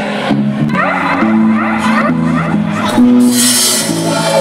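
Live reggae band playing, with bass, drums and keyboards; it grows brighter and a little louder about three seconds in.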